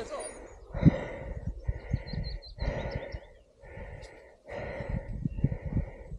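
A mountain-bike rider's heavy breathing, a loud breath about once a second, with short low knocks and rattles from the bike bumping along a rough, muddy trail.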